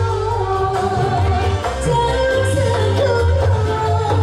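Female sinden singing into a microphone, amplified, over live musical accompaniment with a strong, steady bass line.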